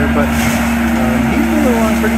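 Compact track loader with a forest mulcher head running steadily at working speed as it clears a trail through small brush and saplings, a constant engine-and-drum hum with a low rumble beneath.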